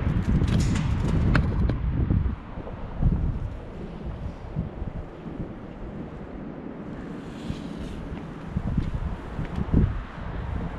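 Wind buffeting the camera's microphone: a heavy rumble for the first two seconds or so, then easing to a steadier, quieter rush.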